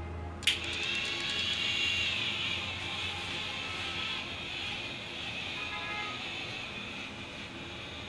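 Battery-powered facial cleansing brush running against the skin: a click about half a second in, then a steady motor whir as the spinning brush head scrubs cleansing milk over the cheek.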